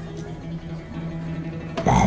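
Acoustic guitar strings ringing on faintly with a steady low note while the guitar is handled, then a sudden handling thump near the end.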